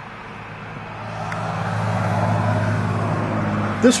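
A motor vehicle's engine running, a low steady hum that swells about a second in and then holds.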